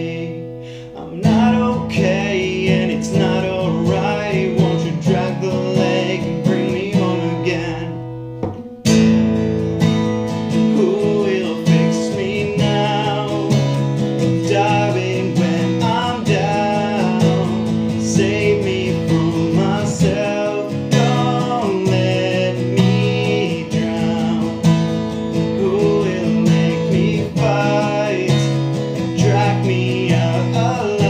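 Acoustic guitar strummed with a man singing over it. The playing eases off briefly at the start and again just before nine seconds, then comes back in full.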